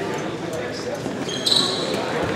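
Volleyball rally on a hardwood gym court: a ball hit and short high sneaker squeaks about one and a half seconds in, another squeak near the end, over a murmur of voices in the hall.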